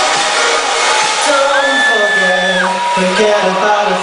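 Loud electronic dance music at a DJ set, in a breakdown without the kick drum: held synth notes, one bending up, holding and then dropping near the middle, over a steady hiss of noise.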